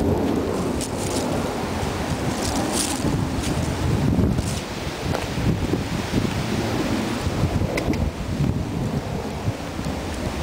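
Wind buffeting the camera microphone, a steady low rumble, with a few brief crackles about a second in, around three seconds in and again near the eighth second.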